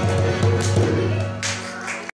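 Harmonium and hand drum playing the closing bars of a folk tune. The drum strokes stop about a second in and the harmonium dies away toward the end.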